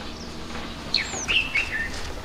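Small birds chirping: a few short high calls and a falling whistle about a second in, over a low steady background hum.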